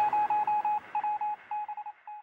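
A run of short electronic beeps on one steady pitch in a quick, uneven rhythm, growing fainter toward the end; it is the tail of the end-screen music.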